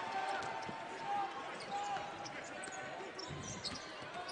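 Basketball being dribbled on a hardwood court during live play, heard low in the big reverberant arena over a murmur of crowd voices.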